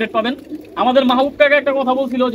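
Domestic pigeons cooing in their loft cages, under a man talking.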